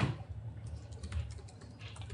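Laptop keyboard being typed on, a few scattered keystroke clicks, the sharpest right at the start, over a low room hum.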